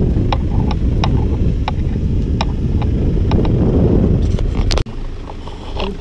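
A small sedan driving by on a concrete strip, engine and tyre noise building to a peak about four seconds in, with wind rumbling on the microphone and scattered sharp ticks. The sound cuts off suddenly near the end and a quieter stretch follows.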